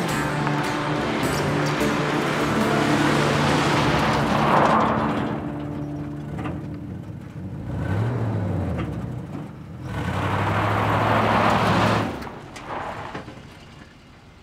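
Old pickup truck driving on a gravel dirt road, engine and tyre crunch on the gravel swelling as it comes close, with a brief rev about eight seconds in. It drops away suddenly at about twelve seconds as the truck pulls to a stop, with background music underneath.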